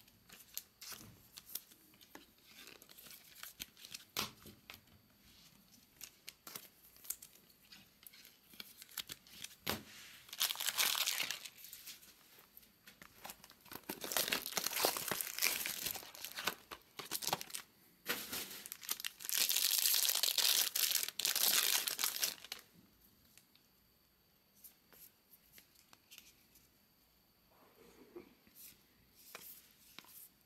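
Trading-card pack wrappers being torn and crinkled open in three long bursts through the middle, between light clicks and rustles of cards being handled.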